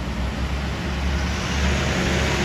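Diesel engine of a Caterpillar wheel loader driving past close by under a heavy load: a steady low rumble with a rushing noise that grows toward the end.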